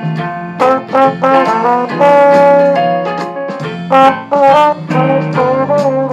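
Valve trombone playing a Dixieland jazz melody: a run of short phrased notes with one longer held note about two seconds in.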